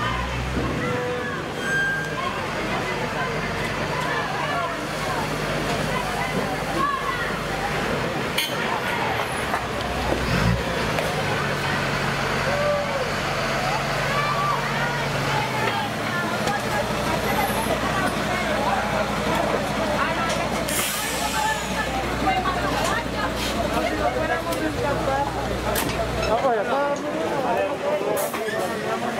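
Diesel engine of a MAN army truck idling under a babble of many voices. A brief hiss about two-thirds of the way through.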